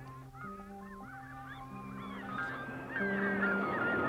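Gulls calling, many short rising-and-falling cries, over background music of long held notes. About three seconds in, a steady rushing noise swells up and becomes the loudest sound.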